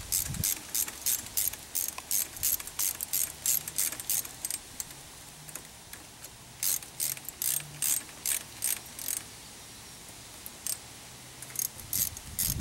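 Ratcheting hand driver clicking steadily, about four clicks a second, as it runs in the ignition coil's mounting screws on a small engine; the clicking pauses briefly in the middle, stops a few seconds before the end, and two single clicks follow.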